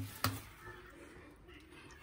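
A single sharp click about a quarter second in, then faint room noise.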